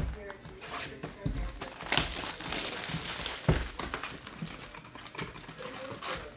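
Hands opening a sealed trading-card hobby box: cardboard and plastic wrapping crinkling and rustling, with a sharp click at the start and a few louder knocks and rustles as the box is handled and its foil packs are exposed.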